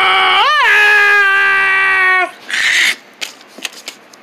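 A person's long drawn-out "whoa" yell in a cartoon voice, held on one pitch with a quick upward wobble about half a second in, then cutting off a little over two seconds in. A short breathy hiss follows, then faint rustling of paper.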